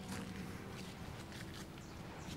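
Soft, irregular footsteps rustling on grass and leaf litter over faint outdoor ambience.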